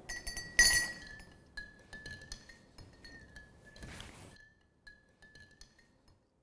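Metal spoon clinking against a glass jar of egg dye, the glass ringing on a steady high tone. A sharp clink comes just over half a second in, followed by several lighter taps.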